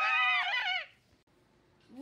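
A child's high-pitched, drawn-out shout of "Yeah!", held and then dropping in pitch as it breaks off just under a second in.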